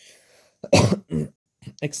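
A man clears his throat in two short rough bursts, the first the louder, after a faint intake of breath.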